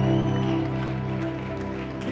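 Worship band music between spoken lines: sustained keyboard chords over low held bass notes, slowly growing quieter.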